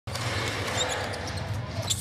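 Arena sound from a professional basketball game: a basketball bouncing on the hardwood court over steady crowd noise.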